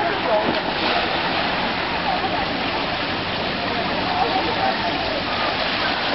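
Steady rush and splashing of water from swimming-pool fountains, with faint voices of bathers in the background.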